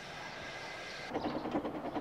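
A faint hiss, then, about a second in, the quiet sound of a steam locomotive running along the track.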